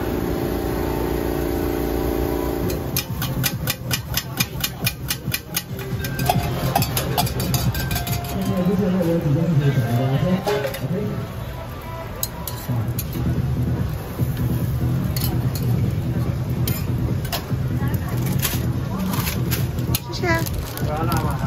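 Busy street-food stall: people talking and music in the background. A few seconds in there is a quick run of evenly spaced clicks, about four a second, and later scattered sharp clicks, fitting metal utensils working a steel griddle.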